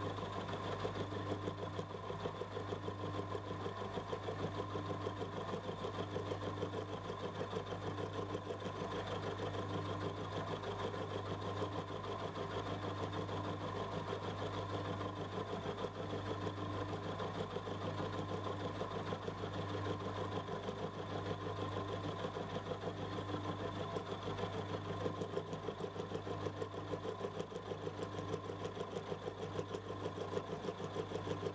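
Milling machine running a freshly sharpened end mill as it surfaces a block of mild steel, a test of the re-ground end cutting edges. A steady motor hum with the continuous sound of the cut.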